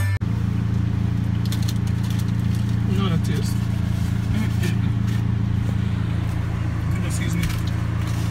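Car driving at a steady pace, heard from inside the cabin as an even low drone, with faint voices and light clicks over it.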